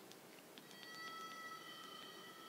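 Near silence: faint room tone with a few faint ticks, joined under a second in by faint steady high-pitched tones.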